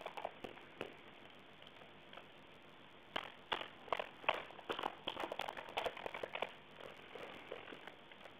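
Computer keyboard keys tapped in a quick, irregular run of clicks starting about three seconds in and easing off after a few seconds, heard faintly over a narrow-band conference phone line.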